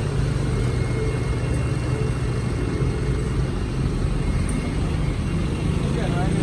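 A motor vehicle engine idling steadily, a low even hum with no change in speed.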